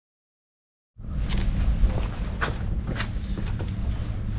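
Silence for about the first second, then a steady low outdoor rumble with several sharp taps and knocks as a person moves about and handles parts beside the car.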